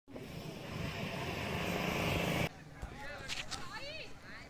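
Road traffic: a motor vehicle's noise swells louder for about two and a half seconds, then cuts off abruptly. Faint voices follow.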